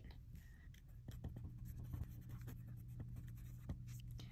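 Faint scratching and ticking of a pen writing quickly on a sheet of paper, many short strokes in a row.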